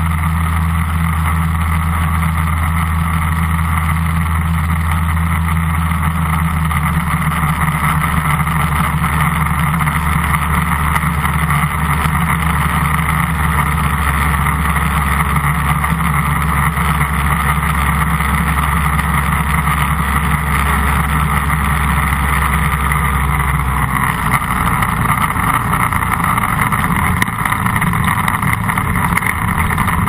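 Tandem Airbike ultralight's two-stroke engine and propeller running steadily in flight, with wind rushing past the open airframe. The low drone shifts slightly in pitch about three-quarters of the way through.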